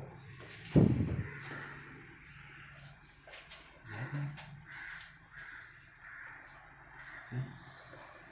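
Faint, repeated harsh bird calls, with a single dull thump about a second in that is the loudest sound.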